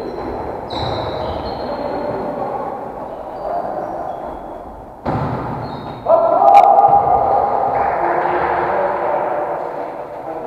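Indoor volleyball rally in an echoing gym: sharp knocks of the ball being hit, short high squeaks of sneakers on the wooden floor, and players' voices, loudest from about six seconds in.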